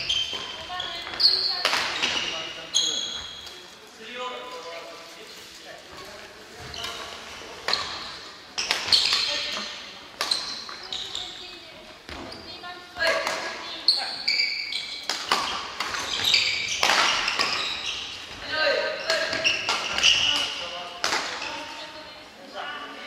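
Badminton rackets striking shuttlecocks in a rally: sharp hits at irregular intervals, mixed with short high squeaks of court shoes on the wooden floor, echoing in a large gymnasium.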